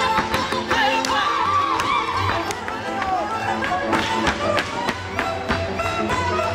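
Hungarian folk dance music led by fiddle, with the dancers' boots striking the stage floor in sharp, irregular hits over it.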